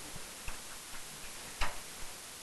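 A few faint light clicks, then a sharper tap about one and a half seconds in: a stylus on an interactive whiteboard while a rectangle is drawn.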